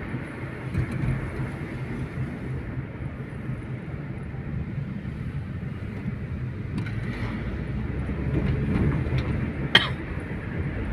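Car driving, heard from inside the cabin: a steady low rumble of engine and tyre noise that grows a little louder in the last few seconds, with one sharp click near the end.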